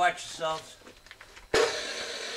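Metal-cutting chop saw switched on about one and a half seconds in: a sudden loud start, then the motor running steadily at speed.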